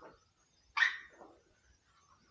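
A dog barking once, a single sharp bark a little under a second in, after a fainter short sound at the very start.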